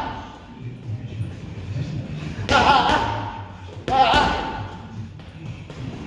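Two punches landing on boxing focus mitts, about a second and a half apart (around two and a half and four seconds in), each a sharp smack together with a shouted 'ha' exhale from the boxer.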